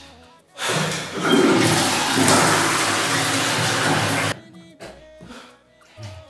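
A toilet flushing: a loud rush of water starts about half a second in and cuts off suddenly some three and a half seconds later, with background music running underneath.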